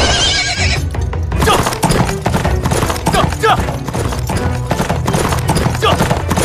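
A horse's hooves beating rapidly as it runs, with whinnying cries, over background music.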